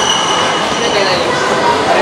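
Indistinct voices talking, with a steady high-pitched tone under them that stops about a second and a half in.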